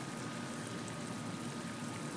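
Homemade PVC drip irrigation line running, water trickling steadily from its drilled 1/16-inch holes into the plant buckets: a faint, even hiss.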